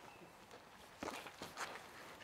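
A few faint footsteps on a path, the first about a second in.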